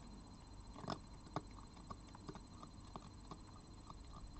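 Red fox crunching dry kibble off a plate: quick, irregular crunches and clicks, with a louder crunch about a second in.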